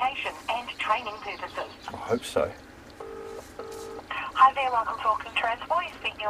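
Telephone ringing tone heard over a speakerphone: one double ring, two short steady beeps close together, between stretches of voice on the phone line.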